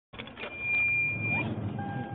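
Low vehicle rumble inside a car cabin, with a steady high electronic beep held for about a second, then a lower beep starting near the end.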